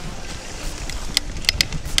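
Mountain bike riding over a rough dirt trail: a steady rumble of wind on the microphone and rolling tyres, with a few sharp rattling clicks from the bike over the bumps.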